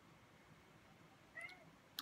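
Near silence: room tone, with one brief, faint, high-pitched call about one and a half seconds in.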